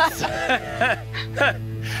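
A person laughing in short bursts, over background music with steady held tones.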